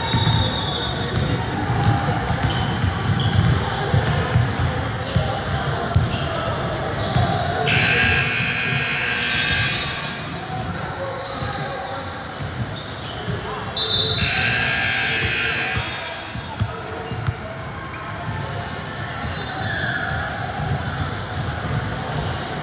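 A basketball bouncing on a hardwood gym floor, with voices echoing in the large hall. Two loud, harsh blasts of about two seconds each sound about eight and fourteen seconds in.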